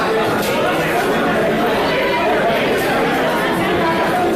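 Many people talking at once in a large hall: a steady babble of overlapping voices with no single speaker standing out.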